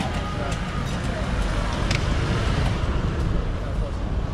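Busy street ambience: a steady low rumble of traffic under scattered voices of passers-by, with one sharp click about two seconds in.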